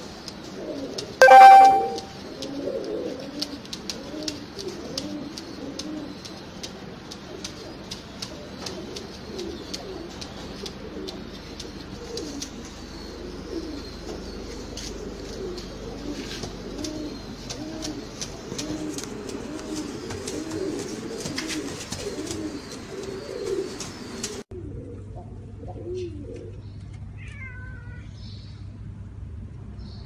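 Domestic fancy pigeons cooing over and over, the low rolling coos of a pigeon puffed up and bowing in display. A short, loud, high-pitched squeal comes about a second in, and the cooing cuts off suddenly near the end.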